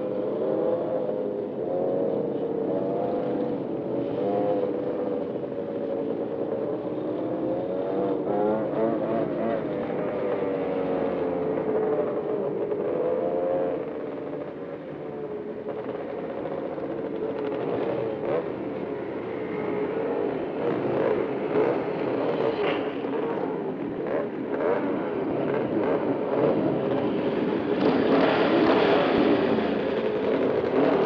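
A pack of motorcycles riding together, their engines running and revving so that the pitch rises and falls, and growing louder near the end as they pull in.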